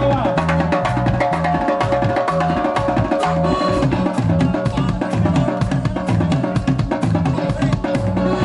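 Live band playing an instrumental passage: a steady drum beat with electric bass and electric guitar.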